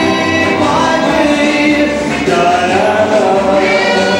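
A group of young children singing a song together over recorded musical accompaniment.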